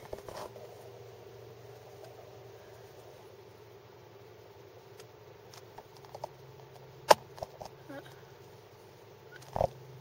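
Car engine idling as a steady low hum, with scattered small handling clicks from a handheld camera, one sharp click a little after seven seconds and a short thump near the end.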